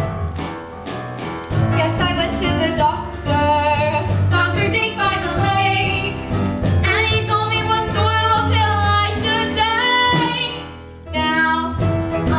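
Girls' voices singing a musical-theatre number over an accompaniment with a steady beat. The music drops away briefly near the end, then comes back in.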